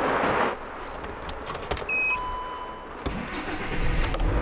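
Volkswagen Crafter ambulance being started: a few key clicks, a short high electronic beep about two seconds in followed by a longer lower tone, then the diesel engine starts near the end and keeps running.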